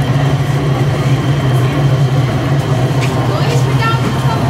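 Electric potter's wheel running with a steady low motor hum as it spins wet clay being centred by hand.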